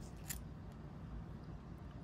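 Quiet room tone with one or two faint, sharp clicks shortly after the start, from handling a metal-handled nail-art tool in long acrylic-nailed fingers.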